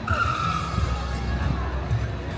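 A high-pitched screech that starts suddenly and slides slightly down in pitch over about a second and a half, with music and voices in the background.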